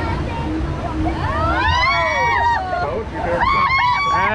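Whitewater rapids rushing and sloshing around a round river raft, a steady churning under everything. From about a second in, several people's voices call out over the water, with rising and falling shouts.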